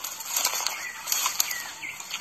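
Rustling and handling noise with a few soft clicks, as a freshly husked ear of corn and its husks are handled and lifted to the mouth; a couple of faint high chirps near the end.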